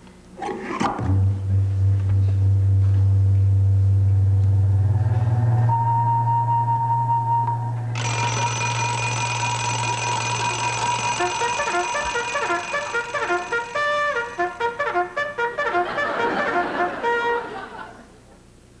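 Electronic machine sound effect as the contraption is switched on. A low hum starts about a second in and is joined by a steady high tone. About eight seconds in, a thick cluster of high sustained tones comes in, and from about twelve seconds a fast run of short bleeping notes follows until it stops near the end.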